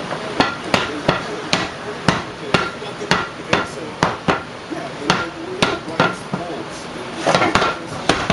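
A series of sharp knocks or bangs, roughly two a second and somewhat irregular, with a quick cluster near the end.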